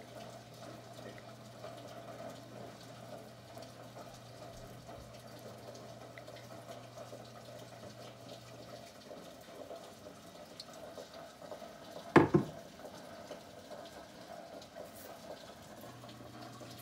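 Cooking oil poured from a bottle into an empty pan: a faint, steady trickle. One sharp knock, the loudest sound, about twelve seconds in.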